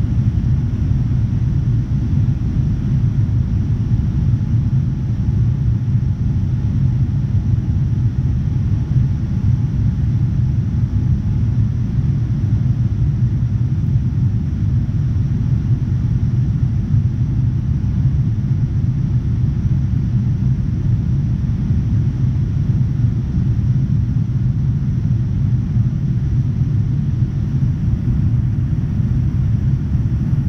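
Cabin noise inside a Boeing 787-9 in its climb after takeoff: a steady low rumble of the Rolls-Royce Trent 1000 engines and airflow, heard from a window seat beside the wing.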